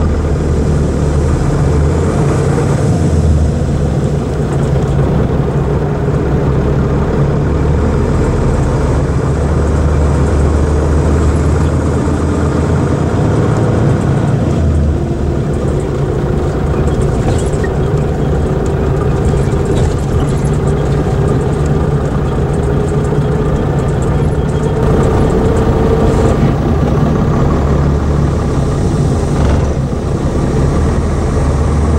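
Ikarus EAG E95 coach's Scania diesel engine running, heard from inside the passenger cabin: a steady low hum, with a fainter tone that rises slowly through the middle as the coach gathers speed.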